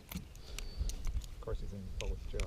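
Scattered light clicks and taps from hands and tools working a hooked small musky loose in a landing net, over a low rumble.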